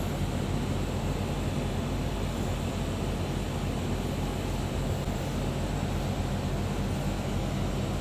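A steady, low mechanical hum under a constant background noise, unchanging throughout.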